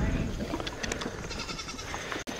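Horse biting into and chewing a ripe pear taken from a hand, with a few short crunches about half a second to a second in.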